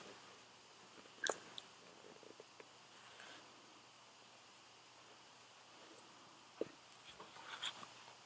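Faint handling noises from a half helmet and Bluetooth headset being worked with by hand: a sharp click a little over a second in, another click later on, and a few small rustles near the end, over near-silent room tone.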